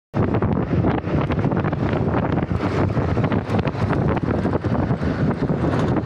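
Wind buffeting on a small action camera's microphone during a ride along a street, a steady low rumble with rapid irregular flutters.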